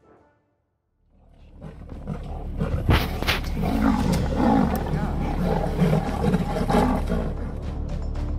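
A lion and a leopard growling as they fight in a tree. The sound starts about a second in and is loud, over a steady low wind rumble on the microphone.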